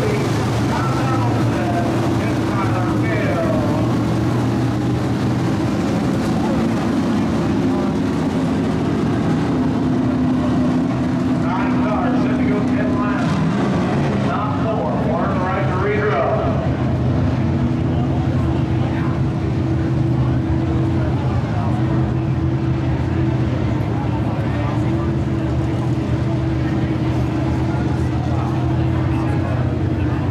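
Several IMCA Modified dirt-track race cars' V8 engines running hard at racing speed as they circle the track, a steady multi-engine drone. Voices talk over it near the start and again about midway.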